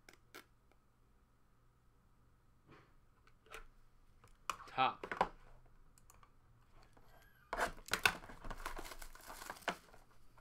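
Cardboard and wrapping on a trading-card hobby box being torn and crinkled open, in a dense noisy stretch starting a little past halfway. A few light taps of card stock on the table come before it.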